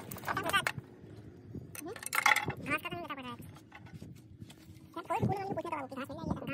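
Mostly voices: short spoken phrases in three bursts, near the start, in the middle and near the end.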